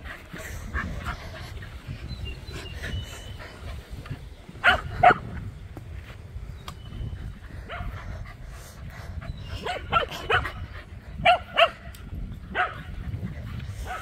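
A dog barking in short, pitched barks: two loud barks about five seconds in, then a run of barks between about ten and thirteen seconds.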